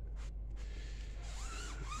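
Foam block applicator rubbing dressing onto a rubber tire sidewall: a faint, even wiping over a steady low hum.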